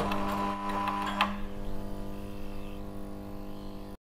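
Steady electrical hum and buzz of a lit neon sign, with a few sharp crackles in the first second and a half as it flickers; the hum eases off slightly toward the end.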